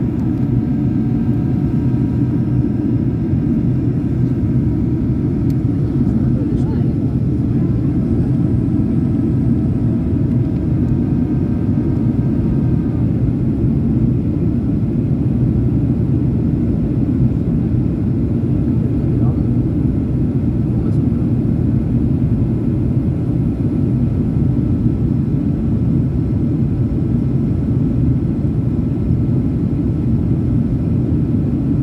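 Steady cabin noise inside a Boeing 737 airliner on its descent: the deep, even rumble of the engines and airflow. Faint steady higher tones sit on top and fade out about thirteen seconds in.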